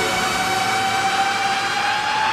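Electronic soundtrack drone: a steady sustained tone with overtones over a hiss, starting to glide upward in pitch near the end as a build-up.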